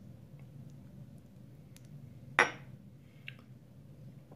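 Wooden spoon stirring thick beef stew in a ceramic crock-pot, quiet and faint, with one sharp knock about halfway through and a smaller one shortly after, over a low steady hum.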